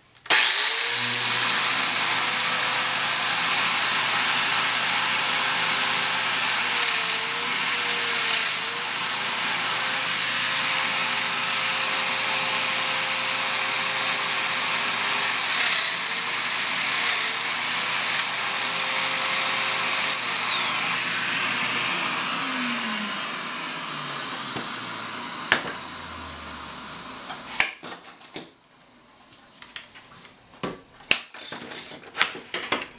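Festool Domino joiner cutting mortises: the motor starts up with a high whine and runs steadily, its pitch sagging in two pairs of brief dips as the cutter plunges into the wood. It is switched off about two-thirds of the way in and winds down, followed by a few light clicks and knocks near the end.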